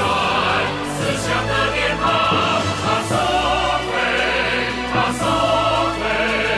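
Background music: a choir singing held chords over instrumental backing, the chords changing about once a second.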